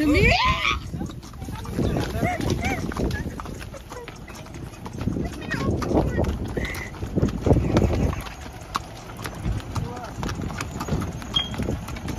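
Several horses walking close together, their hooves clip-clopping irregularly on packed dirt and gravel, with voices talking nearby.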